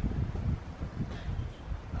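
Wind buffeting the camera microphone: a low, uneven rumble that rises and falls.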